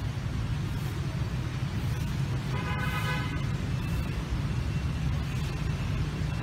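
Steady low rumble of street traffic, with a short vehicle horn toot about two and a half seconds in, lasting under a second.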